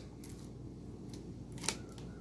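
Bolt of a home-built Lego bolt-action rifle being handled, giving one sharp plastic click near the end, over a low steady hum.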